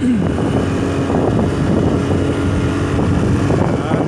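Small motorcycle engine running steadily on the move, with wind rushing over the microphone.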